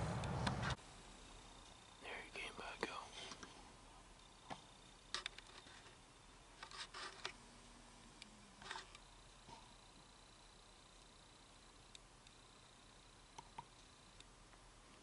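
A low voice trails off in the first second. After that it is mostly quiet, with a few faint whispers and small clicks and rustles close to the microphone.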